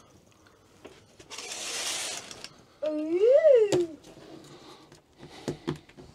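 Privacy curtain being drawn across in a van: a brief swish of fabric, then a short voiced call that rises and falls in pitch, and a couple of light clicks near the end.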